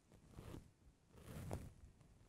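Near silence: room tone with a couple of faint soft rustles, about half a second and a second and a half in.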